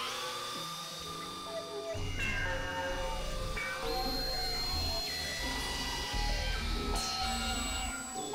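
Experimental electronic synthesizer tones from a Novation Supernova II: several pitched voices gliding in pitch and held notes changing every second or so, with a low bass drone coming in about two seconds in.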